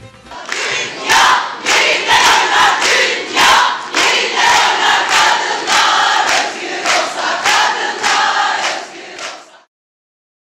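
A crowd of women chanting together in unison, with rhythmic hand claps about twice a second. It cuts off suddenly near the end.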